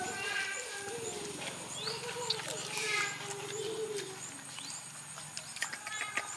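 Dog growling low and steadily for about five seconds while it eats from a metal tray, with a few faint chewing clicks.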